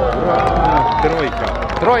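Voices of onlookers talking and calling out in a crowd, with one voice holding a drawn-out note a little under a second in.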